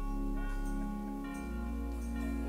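Instrumental church music: held chords that change about a second and a half in.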